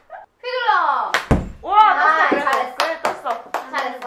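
Women's voices exclaiming and laughing, with long falling vocal glides. A heavy thunk sounds about a second in, and a few sharp clicks follow later.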